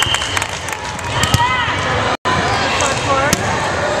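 Players' and spectators' voices in a gym, with sharp knocks of a volleyball bouncing on the hardwood floor and being struck. The sound drops out for an instant a little past halfway.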